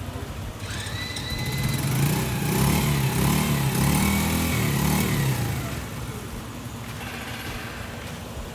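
A small motorcycle engine revving, its pitch wavering up and down. It builds over the first two seconds, is loudest through the middle, and dies down after about five and a half seconds.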